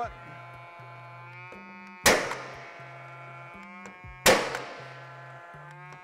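Two shots from a cordless gas-powered nail gun, about two seconds apart, driving helical-shank nails through plywood bracing into a steel frame. Each is a sharp bang with a ringing tail. Background music runs underneath.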